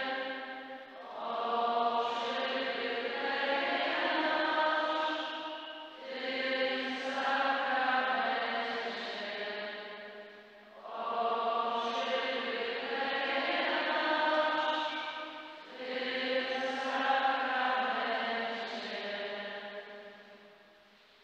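Slow sung chant in a reverberant church, in four long phrases of about five seconds each with short breaks between them.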